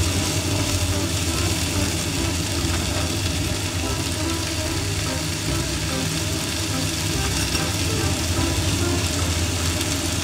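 Chopped mizuna sizzling steadily in a frying pan, over a constant low hum.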